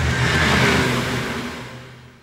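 Go-kart engine running hard at close range, loudest about half a second in, then dying away near the end.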